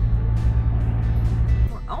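Steady low rumble of a diesel motorhome's engine and tyres heard inside the cab while driving, with soft background music. The rumble cuts off abruptly near the end.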